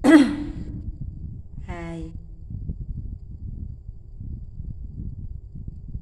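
A woman's voice making short wordless sounds. It starts with a loud sigh-like exclamation that falls in pitch, then gives a brief held 'ah' about two seconds in, over a low steady background noise.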